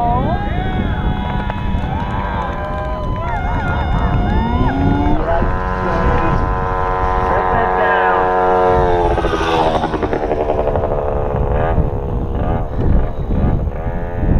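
A racing moped's engine running at high, steady revs as it comes up to and passes the finish line, its pitch sinking slightly as it goes by, over voices and low rumbling noise.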